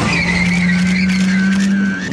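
Car engine running with tyres squealing: a steady engine note under a high squeal that sinks slightly in pitch.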